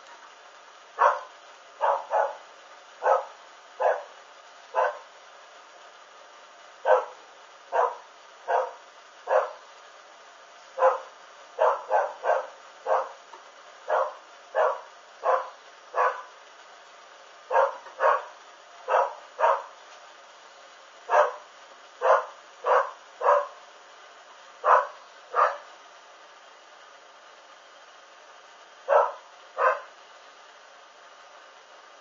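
A dog barking repeatedly, about thirty short barks, single or in quick pairs roughly a second apart, with a few pauses of two to three seconds.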